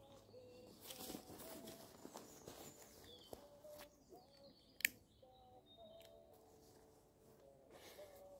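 Near silence: faint outdoor lakeside ambience with faint bird chirps, broken by one sharp, short click about five seconds in.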